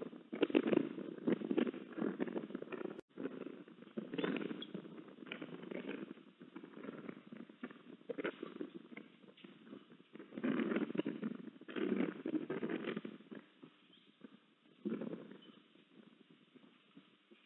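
Eastern ospreys moving about on their stick nest during a feeding: irregular bursts of rustling and scuffling, with scattered soft clicks and pecks. There are clusters of activity about four, eight, eleven and fifteen seconds in.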